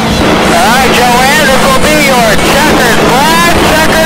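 Race car engine heard from inside the cockpit: a loud, steady drone. Over it, higher-pitched sounds rise and fall about twice a second.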